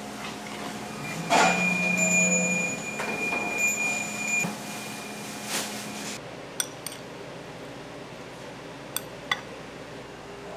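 Metal spoon and tableware clinking at a restaurant table, with a louder clatter about a second in and a few short, sharp clinks in the second half, over a steady hum that stops about six seconds in.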